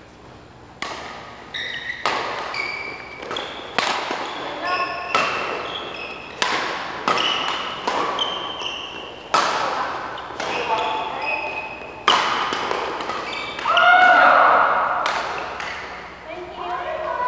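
Badminton rackets striking the shuttlecock over and over in a doubles rally, each hit sharp and echoing through the hall, along with short squeaks of court shoes on the floor. A longer, louder squeal comes near the end.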